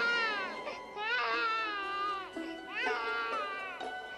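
A newborn baby crying in three separate wails, each bending and falling in pitch, over soft background music.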